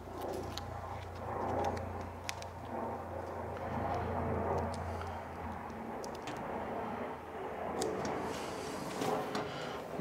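Faint handling sounds of a paper-backed sticker being peeled and then pressed and rubbed flat onto a steel cabinet door, with a few light clicks. A low steady hum underneath stops about halfway.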